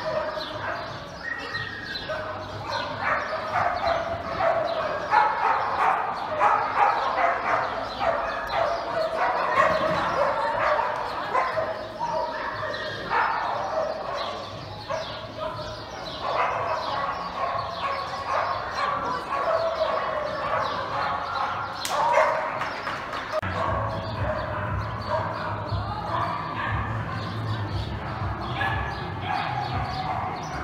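Dogs barking repeatedly, over people's voices.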